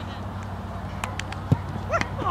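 A soccer ball struck hard in a shot on goal: a single sharp thud about one and a half seconds in, over steady outdoor background noise, with a player's shout starting near the end.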